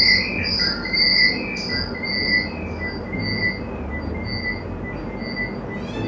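A tinkling melody of short, high, bell-like notes, about two a second, that fades away gradually, over a low steady hum.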